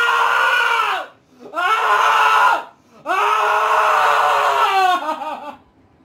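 A young man screaming in three long, held cries with short breaks between them. The last cry fades out about five seconds in.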